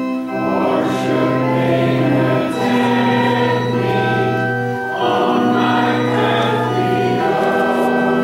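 Congregation singing a hymn together with organ accompaniment, in long held notes that change every second or two over a sustained bass line.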